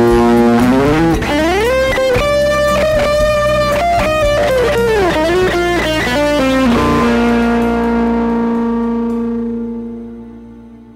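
Grassroots Forest electric guitar on its front humbucker, played solo as a single-note lead line. The notes slide and bend up and down through pedal reverb and delay. A final note is held from about seven seconds in and fades away near the end.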